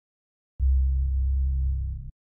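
A deep, low sound-design boom from a trailer, a synthesized bass hit. It starts with a sharp attack about half a second in, holds steady for about a second and a half, then cuts off abruptly.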